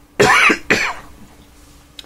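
A man coughing twice in quick succession.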